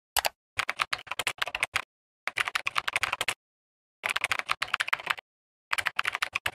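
Computer-keyboard typing sound effect: rapid key clicks in runs of about a second each, broken by stretches of dead silence.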